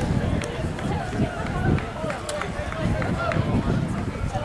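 Indistinct talking voices with an irregular low rumble underneath.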